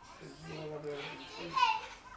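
Soft speech from a quieter, higher voice than the man's, with a short high-pitched vocal sound about one and a half seconds in.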